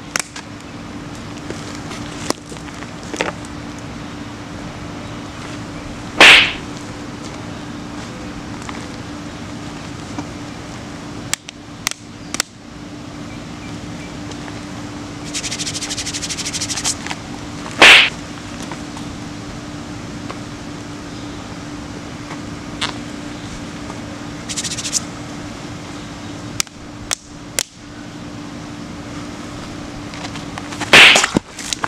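Two hard open-hand slaps, each a single sharp smack, about six seconds in and again near eighteen seconds, dealt as the loser's penalty in a rock-paper-scissors slap game. A steady low hum runs underneath, with a few faint clicks.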